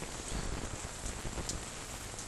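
Rain falling steadily, an even hiss with no distinct drops standing out.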